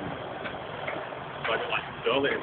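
Class 37 diesel locomotive engine idling with a steady running sound.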